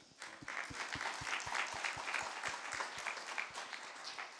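Congregation applauding: a burst of many hands clapping that starts just after the opening and begins to die away at the end.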